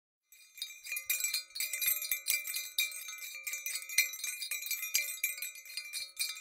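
Bright tinkling chimes, many small strikes ringing over one another, starting just after the beginning and going on throughout.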